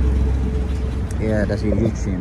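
Street traffic: a steady low rumble of vehicle engines running close by. People's voices join in from a little past one second in.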